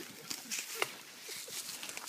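Dry grass rustling and crackling with footsteps, as scattered short clicks, and a brief soft laugh about a second in.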